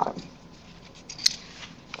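Quiet room tone with a few faint ticks and one sharp click about a second in: light handling noise at a lectern.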